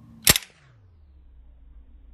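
A wooden marble launcher fires with a single sharp snap about a quarter of a second in, as its spring releases and sends the marble off.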